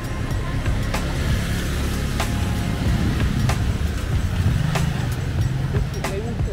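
Small motorcycle engines running on a cobbled street, their low rumble growing louder as the bikes approach, over background music.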